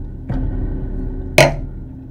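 Horror film score: a low, dark drone with held tones swells again about a third of a second in. A sharp, loud hit about one and a half seconds in is the loudest sound, and the drone fades quieter after it.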